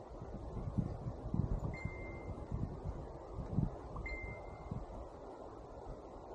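Wind buffeting the microphone and irregular thuds of footsteps on a dirt track, with two short, clear high ringing notes about two seconds apart.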